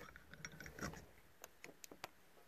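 Faint, scattered small clicks of metal brake master cylinder parts being handled as a new rubber seal and the piston are worked into the cylinder by hand, a few sharper ticks in the second half.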